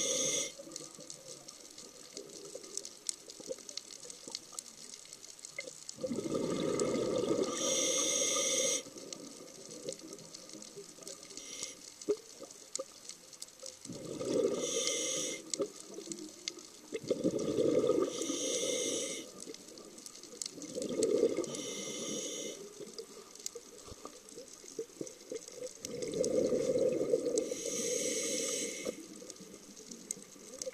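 Scuba diver breathing underwater through a regulator: about five exhalations, each a burst of bubbling lasting one to three seconds, with quieter hiss between breaths.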